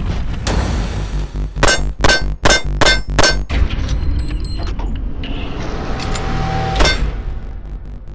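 Wilson Combat-built BCM Gunfighter 1911 pistol firing a Bill Drill on steel: one shot, then a quick string of six shots about a third of a second apart, the hits ringing off steel. One more shot comes near the end, all over background music.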